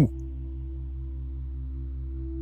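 Soft ambient background music: sustained low drone tones with a gentle, regular pulse beneath them.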